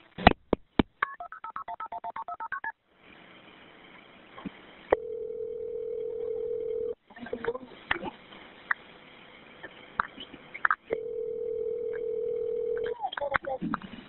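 Telephone line audio. A few clicks come as the previous call disconnects, then a rapid string of about a dozen short touch-tone dialing beeps at shifting pitches. After that the ringback tone on the line rings twice, about two seconds each with a four-second gap, before a voice comes on near the end.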